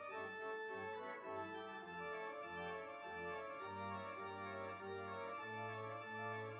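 Organ playing slow, sustained chords over a moving bass line: instrumental worship music.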